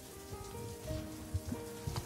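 Soft background music with sustained, held notes, over a faint crackling hiss.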